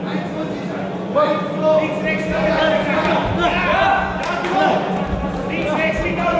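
Men's voices shouting and calling out around a boxing ring in a large, echoing hall, over a steady low hum, with a couple of sharp knocks in between.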